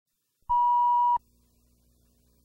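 A single steady electronic test-tone beep, about two-thirds of a second long, starting half a second in and cutting off sharply: the line-up tone at the head of a videotape's colour-bar countdown leader. A faint low hum remains after it.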